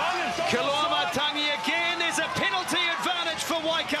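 Speech: a male sports commentator talking quickly and excitedly.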